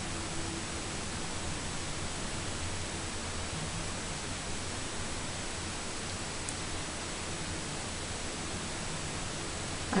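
Steady, even hiss of room tone and recording noise, with a faint low hum and no distinct events.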